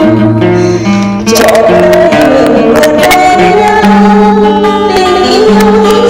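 Steel-string acoustic guitar strummed and picked as accompaniment to a slow Vietnamese song, with a woman singing. A brief dip in the playing about a second in.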